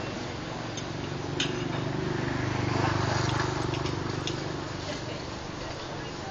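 Engine of a passing motor vehicle, growing louder to a peak about three seconds in and then fading, over a steady hiss. A sharp click about a second and a half in.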